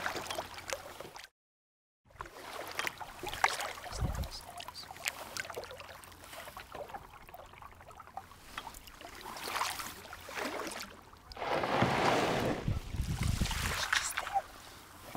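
Kayak paddle strokes: the blades dipping and splashing in the water and dripping, in an uneven run of small splashes. The sound drops out completely for a moment about a second in, and a louder rushing splash comes near the end.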